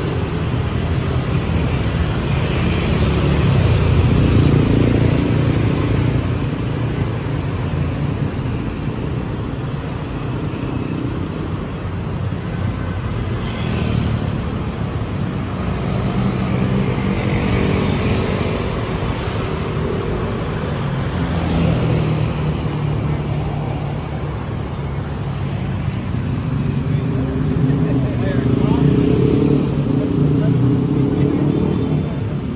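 City street traffic: cars and motorbikes passing on a multi-lane road, the rumble rising and falling as each goes by, with indistinct voices of passers-by.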